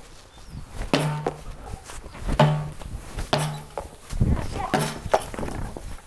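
A small rubber ball striking a hanging cabinet door and the concrete: about four sharp thuds a second or so apart, each with a short low ring after it.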